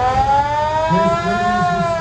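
Antique fire engine's siren wailing: its pitch rises slowly for about a second and a half, then begins to fall. A lower, wavering tone joins underneath about halfway through.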